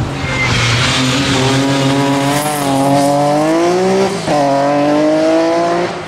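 Rally car engine accelerating hard through the gears, rising in pitch, with a quick upshift about four seconds in before it climbs again.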